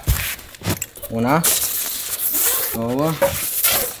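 Stiff cardboard sheets being lifted and slid off a stack one after another, a dry scraping hiss lasting about two seconds, after a short knock at the start.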